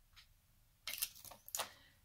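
Cardstock and paper being slid and set down on a craft table: a few light taps and paper rustles, starting about a second in.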